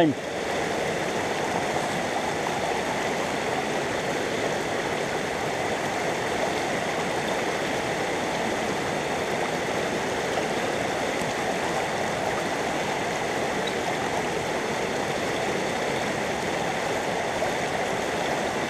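Steady, even rush of river water flowing through a gold sluice box set in a shallow stream.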